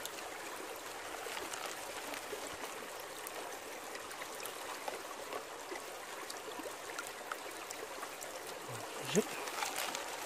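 Water washing and trickling over a ribbed plastic gold pan worked in shallow river water, against the steady flow of the stream, with scattered light clicks of gravel shifting in the pan.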